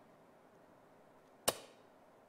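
A dart striking a dartboard and sticking: one sharp impact about one and a half seconds in, dying away quickly.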